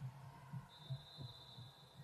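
Faint, uneven low thuds on a hardwood gym court: players' footsteps and basketball bounces during play, a few sharper ones about half a second, one second and a quarter past one second in. A faint steady high tone runs through the second half.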